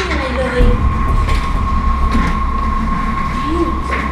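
A steady low rumble with a held high tone, with faint voices under it.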